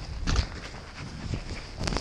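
Skis running through deep powder snow, with wind rumble on the microphone. Two short sharp knocks, about a third of a second in and near the end.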